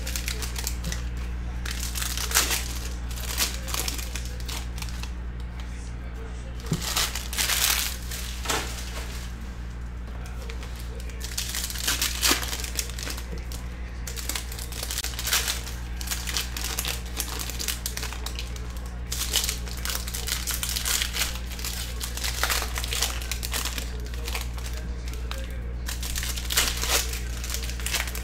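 Foil wrappers of Panini Select basketball card packs crinkling while the cards are handled and flicked through, a run of short, irregular crinkles and clicks over a steady low hum.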